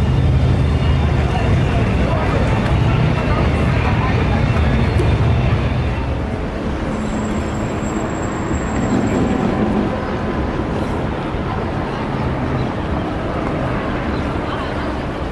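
Busy city street traffic: vehicle engines and tyres in a continuous rumble. A heavy vehicle's deep engine sound is strongest for the first half, then eases off.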